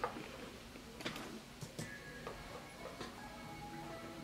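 Faint music: the hip hop track in progress played back from the top through the studio speakers. A few light clicks come first, then the melodic intro comes in about two seconds in.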